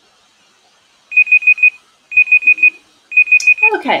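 Google Search's online countdown timer sounding its alarm on reaching zero: three groups of about four quick, loud, high-pitched beeps, roughly one group a second. The third group is cut short when the timer is stopped.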